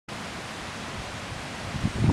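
Steady, even background hiss with no distinct events.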